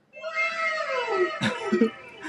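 A long high-pitched cry that falls steadily in pitch over about a second and a half, followed by a few short low sounds near the end.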